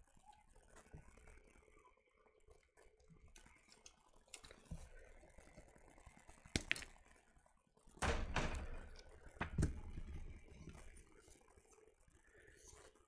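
Faint clicks and snips of sprue cutters clipping parts from a plastic model kit's sprue, with the plastic frame tapping and rattling as it is handled. The loudest handling noise, with two sharp knocks, comes about eight to ten seconds in.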